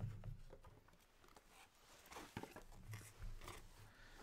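Faint handling noises: a few small clicks and light rustles as small items are put back into a box.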